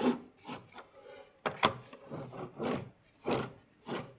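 Cardboard filament spool turned by hand on a filament dryer's rollers, rubbing and scraping in about six short strokes. It turns stiffly: the rollers sit nearly 19 cm apart, so the spool sinks deep between them and the friction is high.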